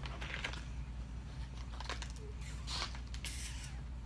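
Quiet room with a steady low hum and a few faint, short rustles or scuffs, several spread across the few seconds.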